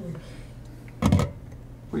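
A stainless steel pot lid is set down on a steamer pot with a single short clunk about a second in, over a low steady hum.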